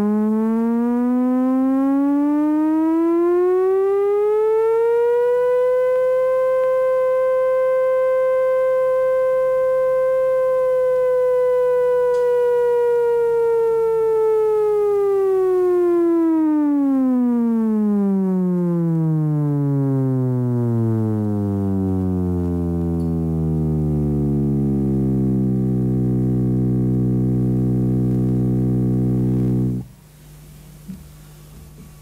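A Trautonium played on its wire-over-metal-rail manual, the wire pressed down and slid along the rail to give a continuous glide in pitch. One sustained electronic tone slides smoothly up for about five seconds and holds a steady pitch. About halfway through it glides down well below its starting note, holds there, and cuts off suddenly.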